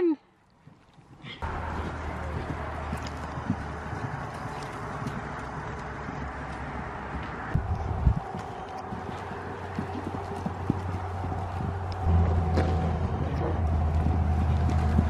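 A horse's hoofbeats on soft dirt arena footing as it moves at speed, heard as faint irregular thuds over a steady low rumble.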